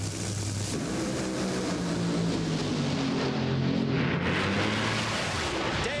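Two Top Fuel dragsters' supercharged nitromethane V8 engines running at the start line, then launching at full throttle less than a second in and making a 4.5-second pass side by side. The sound thins out in its highest notes past the middle and fades near the end as the cars finish the run.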